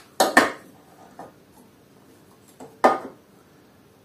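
A steel combination square clicking and clacking against the metal table of a planer-thicknesser as it is set in place: two quick clacks just after the start, a faint tap a little after a second, and a louder clack near three seconds.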